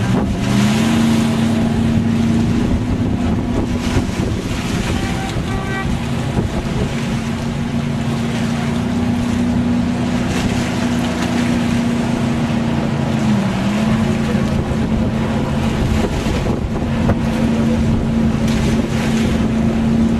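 Motorboat engine running steadily on the water, its pitch stepping up slightly about half a second in and dipping briefly in the middle, with wind buffeting the microphone.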